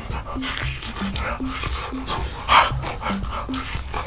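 Background music with a short repeating bass line, under rough wet biting and gnawing on a large sauce-covered meat drumstick, with one louder burst about two and a half seconds in.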